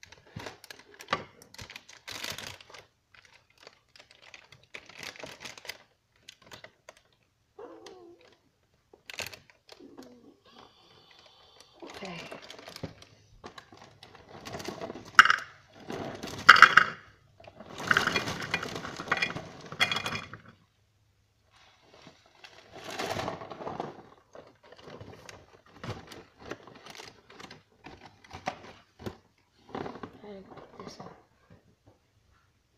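Plastic cereal bag crinkling and rustling while shredded-wheat biscuits are shaken out of the box and rattle into a plastic bowl. It comes in irregular bursts, busiest and loudest in the middle stretch as the bowl fills.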